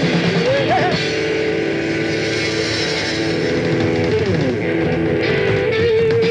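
Live rock band playing, with an electric guitar lead over bass and drums: bent notes early on, a downward slide about four seconds in, then a long sustained note near the end.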